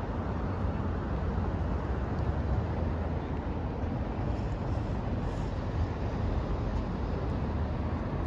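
Steady city traffic noise from the park's surroundings: a constant wash of passing cars with a deep low rumble underneath.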